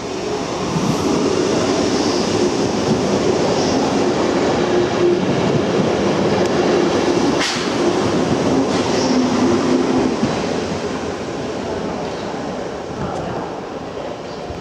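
NS Sprinter electric multiple unit passing along the platform: a steady motor hum over rolling wheel noise swells about a second in, holds, then fades after about ten seconds as the train runs away. There is one sharp click about halfway through.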